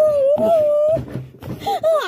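A high wailing cry held on one long, slightly wavering note for about a second, followed by shorter rising and falling cries.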